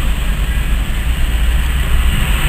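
Steady low rumble and hiss of a car moving slowly in traffic, heard from inside the car: engine and road noise.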